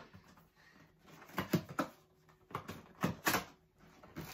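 A cardboard box being worked open by hand: a handful of short scrapes and taps of cardboard, a few about a second and a half in and more near the end.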